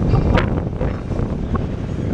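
Wind buffeting a phone's microphone: a loud, low rumble.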